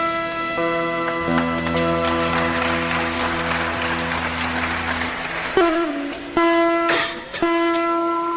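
Carnatic instrumental ensemble music on veena, flute and violin: several long notes held steadily, with a wash of noise swelling and fading in the middle, then a melodic phrase with sliding ornamented notes begins a little past halfway.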